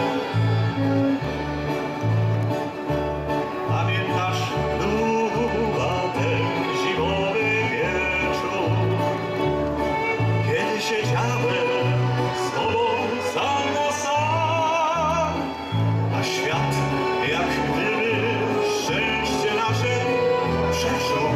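Live band music: violins playing a lilting melody over a bass line that repeats a note about twice a second.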